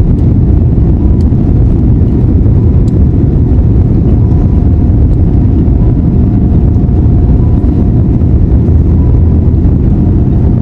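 Jet airliner rolling on the runway, heard from inside the cabin: a loud, steady low rumble of engines and wheels with a faint steady whine above it.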